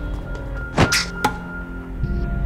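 Tense drama soundtrack music with a sharp whoosh sound effect about a second in, followed shortly by a shorter hit.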